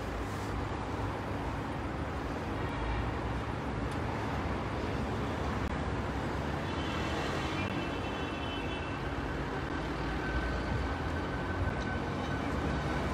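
Steady city street traffic noise, with a continuous low rumble of passing vehicles.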